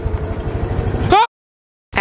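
Small off-road vehicle's engine idling with an even, rapid firing pulse. Just past a second in there is a brief vocal sound, and then everything cuts off abruptly.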